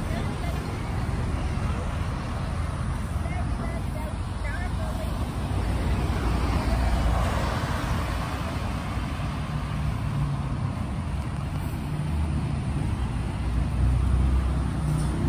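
Road traffic: a steady rumble of cars on the street beside the sidewalk, with one passing vehicle swelling louder about seven seconds in.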